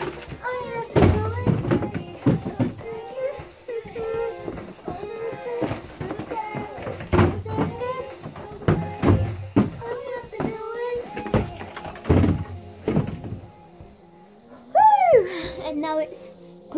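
A song with singing and drums playing in a small room. Near the end comes a loud pitched sound that swoops up and falls away.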